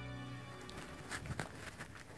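Soft background music with held tones fades out early, then a few faint footsteps, spaced irregularly, from about a second in.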